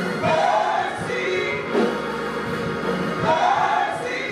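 Live gospel singing by a trio of women's and a man's voices into microphones, holding sustained notes together.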